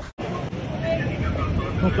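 Outdoor crowd ambience on a city square: scattered distant voices over a low steady rumble, opening after a split-second of silence.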